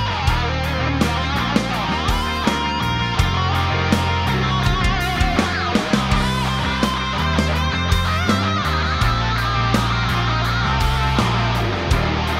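Hard rock music with electric guitar over a steady drum beat.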